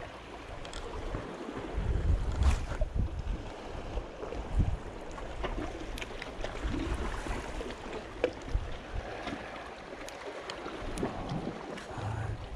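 Gusty wind rumbling on the microphone over the steady wash of the sea against rocks, with a few light clicks and rustles from handling the fishing rod and spinning reel.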